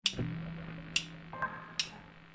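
Three sharp clicks, evenly spaced a little under a second apart, counting in the song, over a steady low electric hum from a guitar amplifier.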